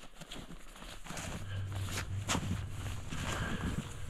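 Footsteps in snow at a walking pace, as irregular soft crunches, with a low steady hum underneath from about a second and a half in.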